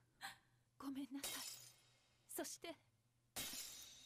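Faint sound effect of glass shattering: a sudden crash of breaking glass near the end that trails away.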